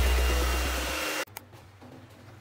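Hair dryer running with a whooshing airflow and a low motor hum, fading a little and then cutting off abruptly just over a second in. Afterwards it is quiet, with a small click.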